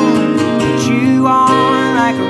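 Acoustic guitar strumming with an electric guitar, and a man singing a slow song.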